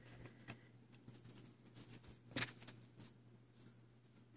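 Faint handling noise from a plastic DVD case: scattered light clicks and taps, with one louder click about two and a half seconds in.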